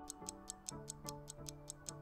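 Countdown timer sound effect: rapid clock-like ticking, about five ticks a second, over soft background music.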